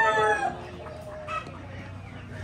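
A rooster crowing; its crow, already under way, tails off about half a second in. Quieter, shorter chicken calls follow.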